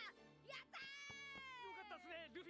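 Faint audio from an anime episode playing at low volume: a high cartoon voice holding one long shout that slowly falls in pitch, over quiet background music.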